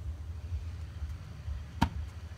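A single sharp tap near the end, as a hand comes down on the hard plastic lid of a cooler, over a steady low rumble.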